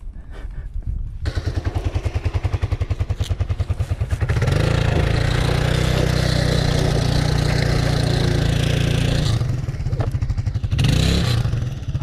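A motorcycle engine close by, pulsing evenly at low revs, then opened up hard from about four seconds in and held for about five seconds as the bike pulls away through loose sand with its rear wheel spinning. A short second burst of throttle comes near the end.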